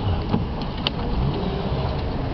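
Driver's door of a 2013 Ford Edge being opened by hand, with a couple of light clicks from the handle and latch. A steady low rumble of wind and handling noise on the microphone runs underneath.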